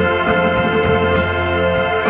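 High school marching band playing, with the brass and front ensemble holding sustained chords.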